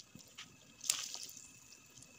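A few faint wet clicks and drips from a pot of broth with freshly added shredded cabbage, the sharpest about a second in.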